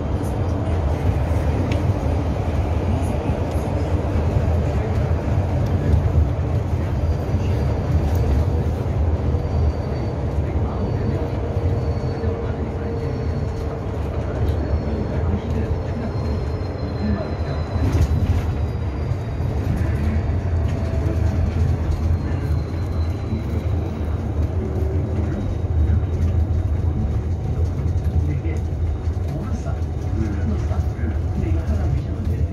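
Interior of a low-floor electric city bus on the move: steady low rumble from the road and running gear, with a faint high whine from the electric drive that slowly falls in pitch through the middle.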